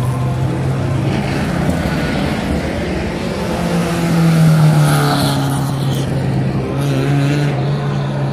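Classic rally car's engine running hard as it drives past at speed, growing loudest about halfway through as it passes close, with the engines of other competition cars running behind it.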